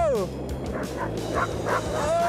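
A team of harnessed sled dogs yelping and barking excitedly. A long drawn-out yowl falls away at the start, then short barks and yips follow from about a second in.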